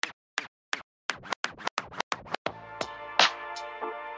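DJ record scratching: short scratch strokes, spaced apart at first and then coming faster and faster. About halfway through, a held chord comes in underneath them.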